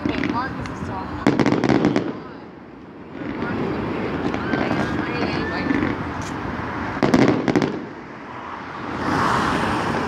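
Aerial fireworks shells bursting, with two louder clusters of bangs and crackle, one about a second in and one about seven seconds in.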